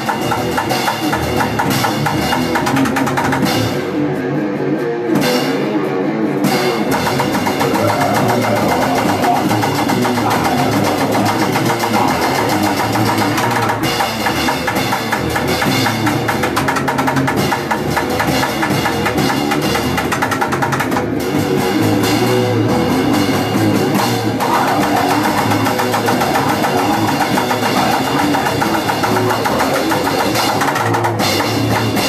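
Grind/crust band playing a song on electric guitar and a drum kit, loud and continuous.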